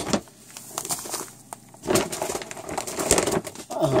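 Plastic food packaging crinkling and rustling irregularly as bags of dry goods are handled and set down.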